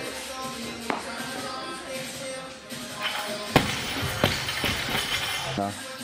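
Background music, and about three and a half seconds in a loud impact with a second hit soon after: a barbell loaded with bumper plates dropped from overhead onto the lifting platform and bouncing.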